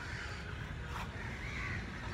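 A bird calling faintly, once about a second and a half in, over a steady low outdoor background rumble, with a faint tick about a second in.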